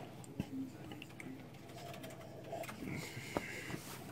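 Faint handling sounds with a few light clicks and knocks, the sharpest about three and a half seconds in, as a drinking glass is set down on a light-box floor.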